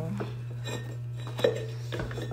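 A few light knocks and clinks, the loudest about one and a half seconds in, as a pottery wheel's plastic splash pan and metal wheel head are handled, over a steady low hum.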